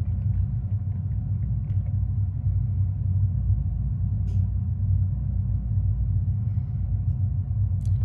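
Steady low machine-room rumble, with a few faint clicks from the keys of a Danfoss refrigeration controller's keypad being pressed to turn the main switch on.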